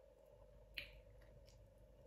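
A single short, sharp click of eating noise about a second in, over a faint steady hum and otherwise near silence.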